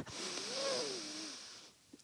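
A woman's long, deep inhalation, heard close on a headset microphone, fading out about a second and a half in.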